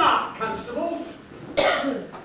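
A voice speaking in short phrases, then a single short cough about one and a half seconds in.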